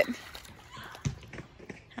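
A dog wading through shallow water, with faint splashing and a couple of small clicks about a second in.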